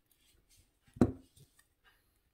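A single sharp knock about a second in, with a brief ringing decay, among faint handling rustles of wire and fingers.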